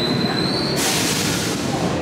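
Loud pit-garage noise: a thin high whine that rises slightly in pitch for most of a second, then gives way to a hiss, over a steady low rumble.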